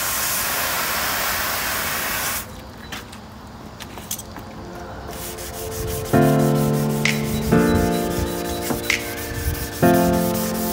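Compressed-air blow gun hissing against a car door panel for about two and a half seconds, then a hand sanding block rubbing over the door's painted steel. Background music comes in about six seconds in.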